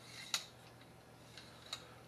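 A few light, sharp clicks from a fishing rod and its taped-on baitcasting reel being handled, the loudest about a third of a second in and two fainter ones near the end.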